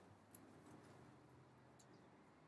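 Near silence: faint room tone with a steady low hum and a single faint click about a third of a second in.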